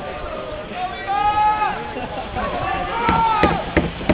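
Several people shouting and calling out in long drawn-out voices, two main calls about a second in and around three seconds in, with a few sharp knocks near the end.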